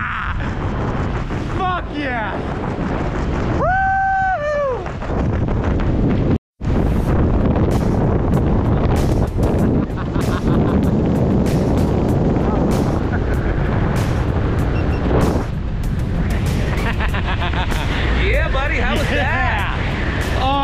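Wind buffeting a helmet or hand camera's microphone under an open tandem parachute. A man's excited shouts come in the first few seconds, with one long, held whoop about four seconds in. The sound cuts out for a moment about six seconds in, then the heavy, crackling wind rumble continues.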